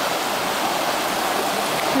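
Shallow rocky creek running steadily over boulders and small rapids: a constant, even rush of water.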